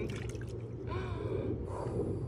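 A woman's short, breathy laugh, in quick bursts near the start and again about a second in.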